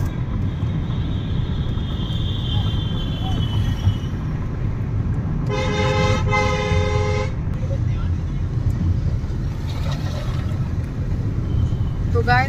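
Steady low road rumble inside a moving car's cabin, with a vehicle horn honking twice in quick succession about halfway through, the second honk longer.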